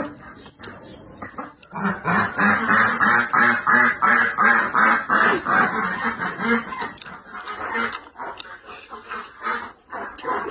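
Domestic ducks quacking in a fast, regular run, about three quacks a second, starting about two seconds in and tailing off near the end.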